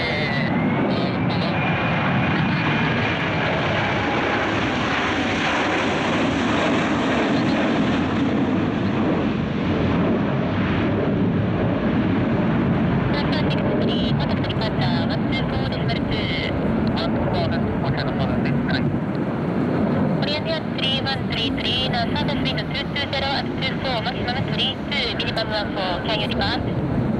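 China Southern Airbus A321 jet engines at go-around thrust as the airliner passes overhead and climbs away. It makes a loud, steady jet rumble, with a high engine whine that fades over the first few seconds.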